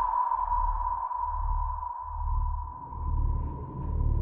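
Cinematic sound design: a sustained high ringing tone that slowly fades, over deep low pulses coming a little faster than once a second.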